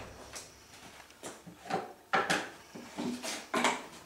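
Empty yellow plastic jerrycans being handled and shifted, giving a series of short, irregular hollow knocks and clatters.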